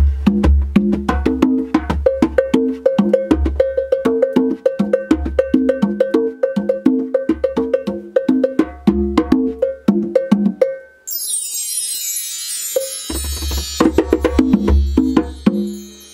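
Meinl bongos and a djembe played by hand in a fast, busy pattern. About two thirds of the way through the drumming breaks off and a bar chime is swept, a bright shimmer that falls in pitch. The drumming then starts again, with a deep low sound underneath.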